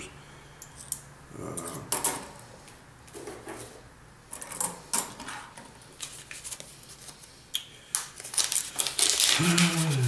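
Half-dollar coins clicking and clinking against one another as they are handled and stacked by hand, in scattered short clicks that come thicker near the end.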